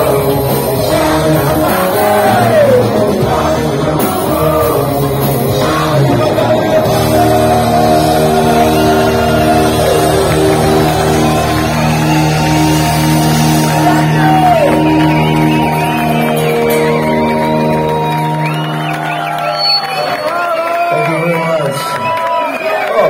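Live heavy metal band with electric guitars, bass and drums playing loudly in a club. It ends the song on a long held chord that dies away a couple of seconds before the end, with the crowd shouting as it fades.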